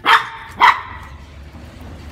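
Two sharp barks, about half a second apart, from a small Brussels Griffon dog during rough play with the others in the pack.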